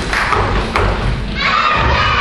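Low thuds of small children's feet on a wooden stage as they dance, with music and singing coming in near the end.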